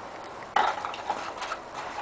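Hard plastic clicking and light rattling from handling a toy airsoft rifle and its parts: one sharp click about half a second in, then a few lighter ticks.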